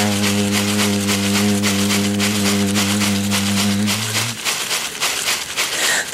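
A man's voice holds one long, low sung note in an Amazonian icaro and breaks off about four seconds in. Under it, a chakapa leaf-bundle rattle is shaken in a steady, quick rhythm and carries on alone for the last two seconds.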